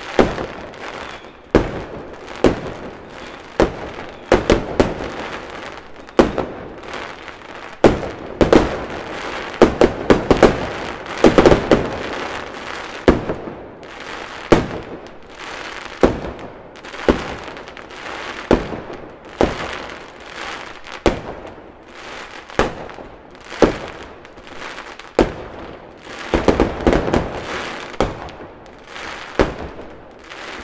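Fireworks going off: irregular sharp bangs, roughly one a second, with bursts of dense crackling about eight to twelve seconds in and again near the end.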